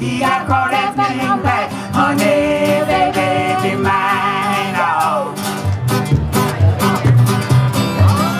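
A live country-blues band: a woman singing a wordless vocal line over strummed acoustic guitar and upright bass. Her voice ends in a falling slide about five seconds in, and the bass and guitar carry on alone after it.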